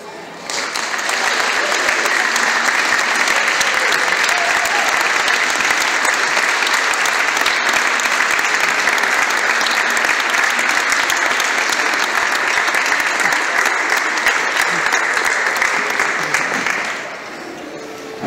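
Audience applauding at the end of a piece, starting about half a second in, holding steady, then dying away near the end.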